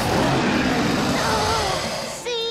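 Cartoon predator dinosaurs roaring and snarling: a loud, rough, rumbling sound with wavering pitch.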